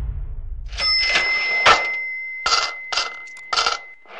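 Cash-register sound effect: a bell rings out about a second in and keeps sounding, over a run of sharp mechanical clunks and clacks, with the tail of the previous effect fading away just before.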